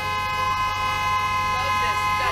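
A car horn held down in one long, steady blast, honking at a car that is holding up traffic.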